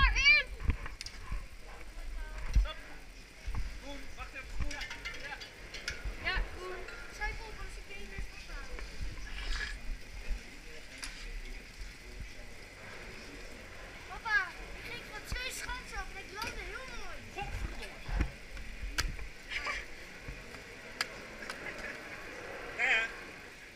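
Voices of people calling and chatting in a ski-lift queue and chairlift station, with scattered knocks and clatter of ski gear and a low rumble underneath.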